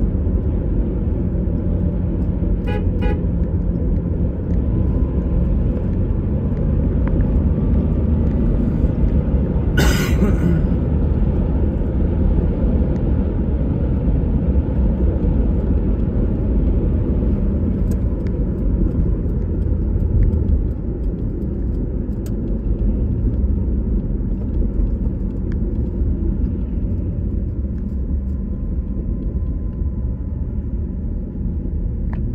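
Steady low road and engine rumble heard from inside a moving car's cabin, with a short vehicle horn honk about ten seconds in.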